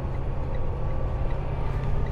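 Steady low drone of a semi truck's diesel engine and road noise, heard from inside the cab while cruising at highway speed.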